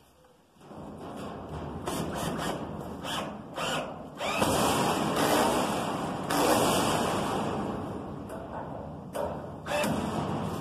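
Cordless drill boring a hole through a sheet-metal panel. It starts about half a second in, runs louder and harder from about four seconds in, then eases off, with a couple of short bursts near the end.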